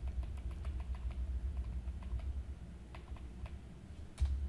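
Typing on a computer keyboard: a quick, irregular run of light keystrokes over a low steady hum.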